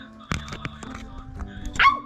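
White-capped pionus parrot giving one short, loud, harsh squawk near the end, over background music, with a knock about a third of a second in.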